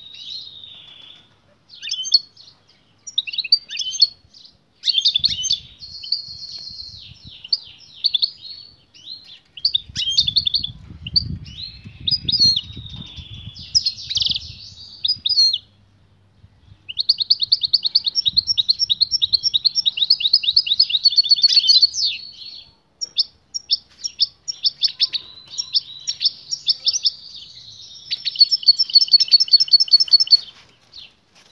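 European goldfinch singing in a cage: a long twittering song of varied chirps, breaking off briefly just past halfway and then going into long runs of fast, evenly repeated trill notes.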